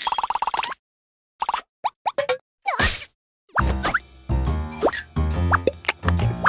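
Cartoon sound effects: a few short plops and sliding pitches separated by silent gaps, then playful background music starts about three and a half seconds in and carries on.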